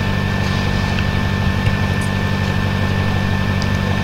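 A steady low hum with a thin, high, steady whine above it, level throughout.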